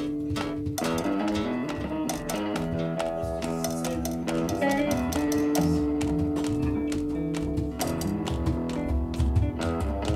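A rock band jamming: sustained chords that change a few times, with plucked notes and light, steady tapping percussion.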